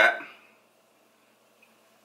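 A man's voice finishing a word, then near silence: room tone.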